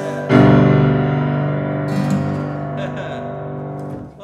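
Grand piano playing a loud full chord struck about a third of a second in, left to ring and slowly die away, then damped off at the very end, as at the close of a song.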